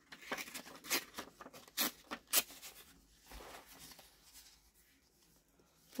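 Thin printed collage paper rustling and crackling as it is handled and positioned by hand, with several sharp crinkles in the first couple of seconds, then softer handling that fades out.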